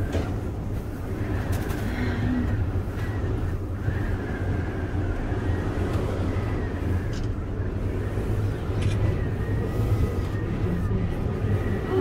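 Steady low rumble and hum of a ski lift running, heard from inside its glass-enclosed car.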